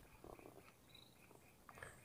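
Near silence: only faint background noise.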